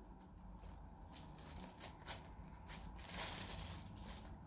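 Faint, intermittent rustling of thin Bible pages being leafed through to find a passage, a little louder past the middle.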